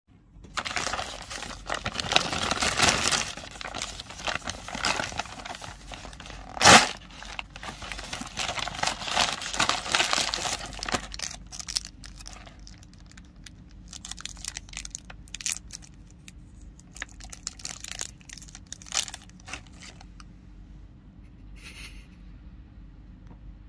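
Plastic snack packaging of a multipack of KitKat minis crinkling and tearing as it is opened, dense for the first ten seconds or so, with one sharp, loud crack about seven seconds in. Lighter, scattered crinkles follow as a single mini's wrapper is handled and torn open.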